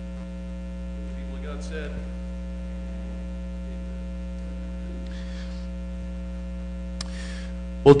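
Steady electrical mains hum from the sound system, a buzz of several fixed tones. A few faint rustles come through it, and there is a sharp click near the end.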